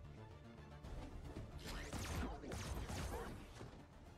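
A film soundtrack playing: background music, with a stretch of crashing sound effects in the middle.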